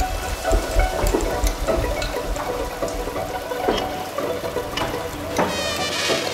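Ambient string-ensemble music: sustained string tones over a low rumble that drops away about two-thirds of the way through, with scattered clicks and a rising glide near the end.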